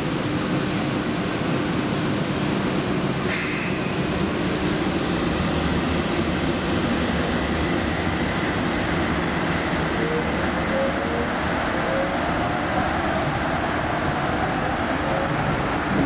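Airport shuttle train (automated people mover) running, heard from inside the car: an even rumble and hiss with a steady low hum. From about ten seconds in, a whine rises steadily in pitch as the train picks up speed. A brief sharp click comes about three seconds in.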